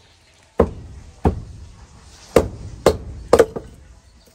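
Six sharp striking blows at uneven intervals, each a hard knock with a dull thud beneath it, the last few coming close together.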